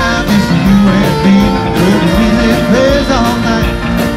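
Live rock band playing: keyboards, guitar and a steady drum beat.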